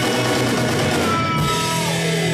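A rock band playing live: electric guitars and a drum kit over a steady, loud wall of sound, with a guitar line sliding down in pitch in the middle.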